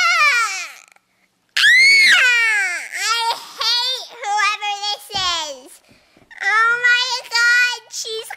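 A girl's high-pitched voice wailing without words: a wail that rises and falls in the first second, then after a short pause a louder, longer wail that sweeps up and back down, followed by a string of short held high notes.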